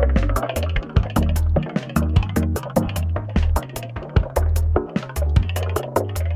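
Electronic music from a modular synthesizer: a sequencer-driven bass line stepping from note to note and synth melody tones over a programmed drum-machine beat with steady, evenly spaced hi-hat-like ticks.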